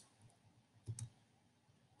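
Near silence with two faint clicks close together about a second in, from a computer mouse button being pressed.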